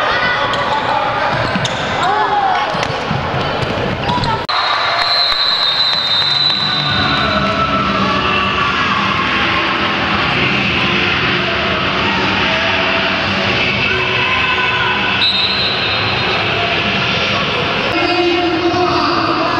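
Echoing sports-hall noise from a youth futsal match: children's voices shouting and chattering, with the ball being kicked and bouncing on the wooden court.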